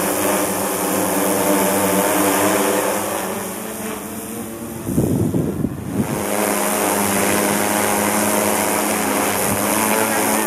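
DJI Matrice 600 Pro hexacopter's six electric rotors giving a steady multi-toned propeller hum as it hovers and passes low overhead. About five seconds in, a brief loud rush of low rumbling noise buffets the microphone as the drone comes close above.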